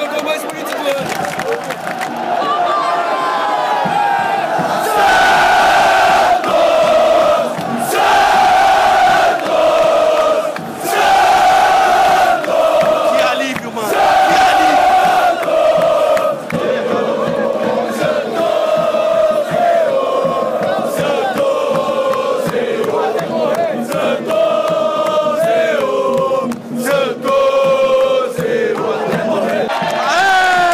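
Football supporters' crowd singing a terrace chant in unison, close around the microphone: the same short melodic phrase repeated over and over, with sharp hand claps cutting through.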